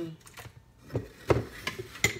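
A metal mesh strainer and spoon knocking against a blender jar: a few short, sharp knocks, the loudest about halfway through.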